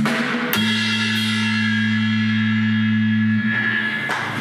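A small rock band with drum kit, electric guitar and keyboard plays rhythmic drum hits. About half a second in, the band strikes one loud chord with a cymbal crash and holds it steadily for about three seconds before it fades, the closing chord of the song.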